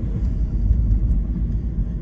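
Steady low rumble of engine and tyre noise heard from inside the cabin of a vehicle driving along a road.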